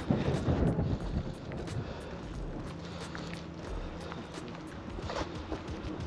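Wind rumbling on the microphone, with a few knocks and handling noise in the first second as the camera is moved.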